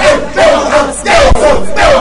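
Loud, fervent shouted prayer: a high, strained voice calling out in short, rapid phrases with brief breaks between them.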